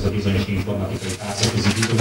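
Speech only: a man's voice, low and hesitant, between phrases of a lecture.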